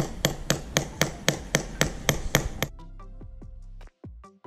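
Hand engraving of a metal plate: a small hammer tapping a chisel into the metal in quick, even strokes, about four a second, which stop about two-thirds of the way through.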